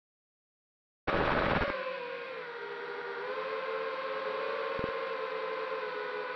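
Silent for about a second, then the brushless motors of an FPV racing quadcopter start up, heard through its onboard camera: a brief loud rush, then a steady high whine with small wobbles in pitch.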